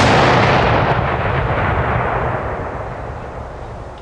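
An explosive charge detonating in a field: a sudden loud blast, then a long rumble that slowly fades over about four seconds.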